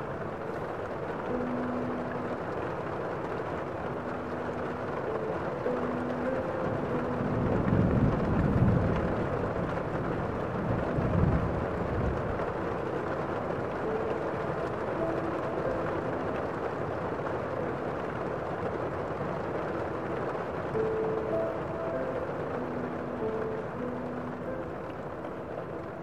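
Steady light rain mixed with soft, slow, sustained pipe-organ notes. Two deep rumbling swells come about eight and eleven seconds in.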